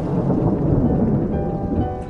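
A deep rumble swelling and then fading, under held musical tones of a trailer score.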